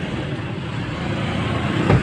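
Steady engine and road noise heard inside a vehicle's cabin, with a brief knock near the end.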